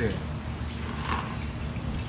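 A short, noisy intake of breath at a mouthful of noodles held on chopsticks, about a second in, over a low steady hum.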